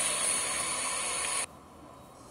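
Steady hiss of a phone recording's background noise, cutting off suddenly about one and a half seconds in as the played-back video ends, leaving only a faint hiss.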